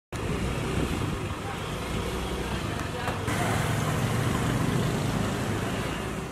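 Roadside traffic and vehicle engine noise, steady throughout, with indistinct voices mixed in.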